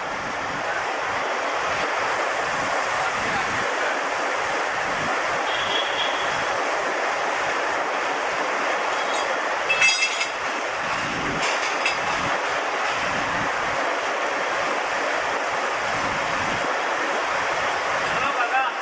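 Steady loud hiss of compressed air escaping at the air brake hose connections between a WDM-3A diesel locomotive and a passenger coach while the hoses are being coupled, with a sharp metallic clink about ten seconds in.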